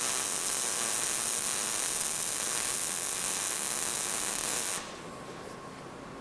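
MIG welding arc running steadily as a pass is laid in a horizontal V-groove joint in steel plate. The arc stops about five seconds in, leaving only faint room noise.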